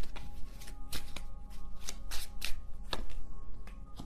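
A deck of tarot cards being shuffled by hand: an irregular run of quick card rustles and snaps.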